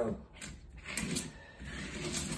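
Squeegee pulled through wet paint over mica flakes: a soft scraping with a few short crackles.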